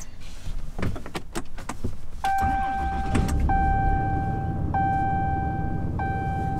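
A RAM 3500's 6.7-litre Cummins turbo-diesel starting after a few clicks and settling into a steady idle. Over the engine, a dashboard warning chime sounds four long tones in a row, about one every second and a quarter.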